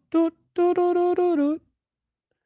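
A voice singing a wordless tune: a short note, then one long held note with a slight dip in pitch at its end.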